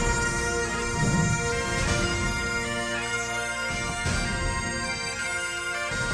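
Bagpipe music: pipes playing a tune over a steady held drone.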